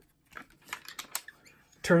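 Plastic clicks and knocks from a Watson 35mm bulk film loader being handled as its film gate is turned open: several short, sharp clicks over about a second.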